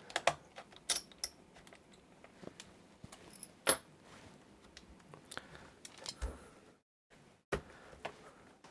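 Scattered light clicks and taps of a screwdriver and small screw against the plastic underside of a laptop as the keyboard-retaining screw is driven back in. A few sharper clicks stand out, one about a second in, one near the middle and one near the end.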